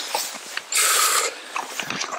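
A man breathing hard while climbing a steep mountain trail, out of breath, with one loud breath about a second in.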